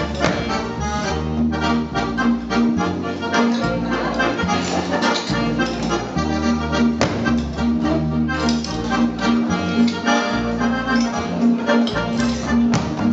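Accordion playing a lively traditional Alpine dance tune, with a steady bass-and-chord beat under the melody.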